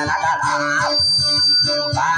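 Dayunday music: a guitar playing a wavering melody over a steady, regularly pulsing bass beat.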